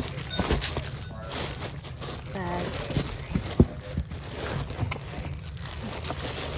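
Tissue paper and plastic wrapping rustling and crinkling as they are handled and pulled off a canvas tote bag, with scattered light knocks and a short bit of voice about two and a half seconds in.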